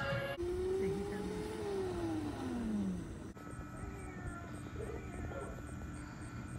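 A cat gives one long, drawn-out meow that rises slightly and then slides down in pitch over about three seconds. It comes just after a brief end of music and is followed by quiet outdoor background with a faint steady hum.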